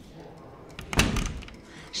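A door shutting about a second in: one loud bang with a short ring after it.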